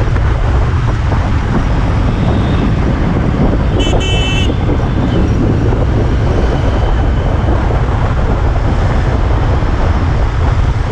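Steady wind rush and road noise on an action camera's microphone riding on a moving two-wheeler through city traffic. A vehicle horn gives one short honk about four seconds in.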